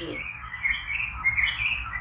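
Birds chirping: a busy run of short, high calls.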